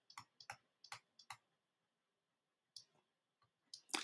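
Faint, sharp clicks of a stylus tip tapping on a drawing tablet during handwriting. About six come in quick succession in the first second and a half, then a few more towards the end.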